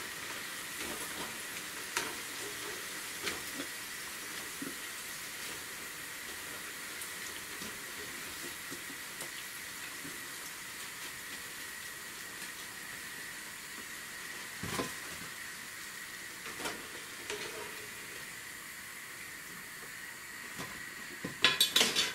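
Pakoras deep-frying in hot oil in a frying pan, a steady sizzle, with scattered light metal clinks against the pan as the cooked pakoras are lifted out with a wire skimmer. There is a louder knock about two-thirds of the way through and a burst of clatter just before the end.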